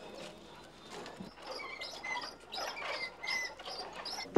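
Small birds chirping in a quick series of short, high calls that start about a second and a half in, over faint background noise.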